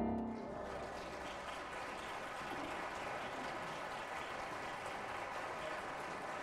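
An audience applauding steadily, while the last piano chord dies away in the first half second.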